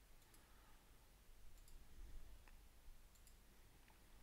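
A few faint computer mouse clicks spread over the seconds, each one short and separate, against near-silent room tone.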